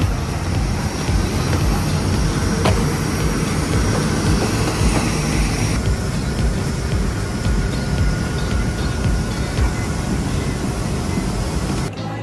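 Loud, steady roar of aircraft and ground equipment on an airport apron, with a deep rumble underneath. The sound changes in tone about six seconds in.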